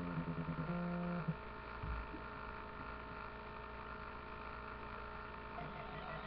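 A steady low hum with overtones that cuts off a little over a second in. A single low thump follows about two seconds in, then a faint steady drone.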